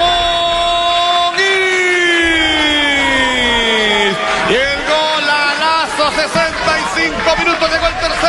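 A football commentator's long held goal shout: one sustained call of about four seconds, its pitch sliding down toward the end, over crowd noise. It is followed by shouted, excited commentary.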